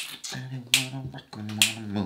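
A man's voice making wordless sounds, a low drawn-out vocalising broken by short hisses, beginning with one sharp click.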